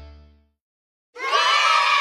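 Background music fades out, then after a short silence a loud burst of excited cheering and shouting voices, about a second long.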